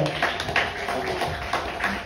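An audience clapping: many irregular hand claps.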